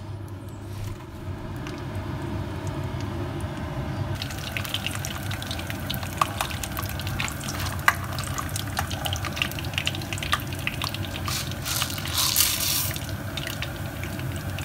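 Peanuts frying in hot oil in a pan, sizzling with a dense crackle that picks up about four seconds in, and a louder burst of sizzling near the end.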